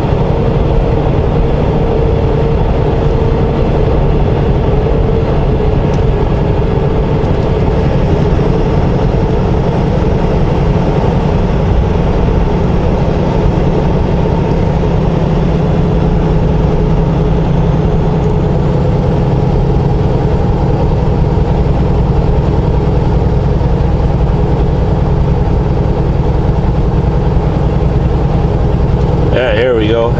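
Semi truck's diesel engine and tyre and road noise heard inside the cab, a steady drone while cruising at highway speed.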